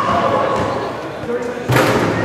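People's voices talking close to the microphone, with one short, sharp thump near the end.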